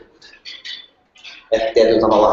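A person's voice: a few soft, short hissy sounds, then a loud vocal sound starting about one and a half seconds in.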